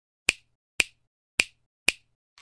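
Four sharp snaps, evenly spaced about half a second apart: an intro sound effect.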